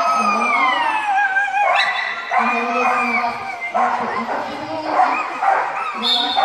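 A dog whining and howling in a run of long, high-pitched cries. The first cry slides down in pitch, and shorter wavering ones follow.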